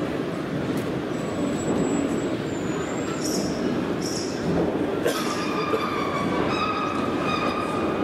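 Steady din of a busy exhibition hall, with a thin high whistle about a second in. From about halfway, a pitched electronic sound of several steady tones at once joins it.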